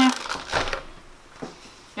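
Grocery packaging handled on a table: a short rustle, then one soft tap about a second and a half in.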